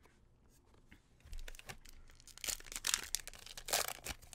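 Foil wrapper of a Pokémon card booster pack being torn open and crinkled by hand. There is a soft thump a little over a second in, then several short bursts of tearing and crinkling in the second half.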